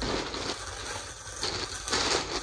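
A plastic mailer bag crinkling and rustling as it is handled with both hands, with irregular short crackles.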